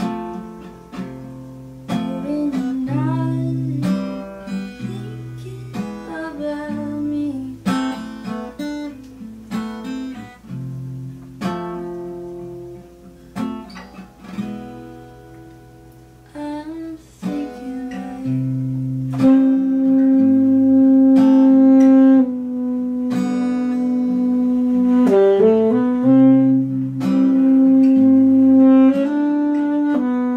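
Acoustic guitar strumming chords, joined past the halfway point by a saxophone playing long held notes over the guitar.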